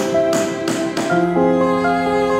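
Hammer striking nails into a wooden board, about three even blows a second, stopping about a second in. Background music with held notes plays throughout.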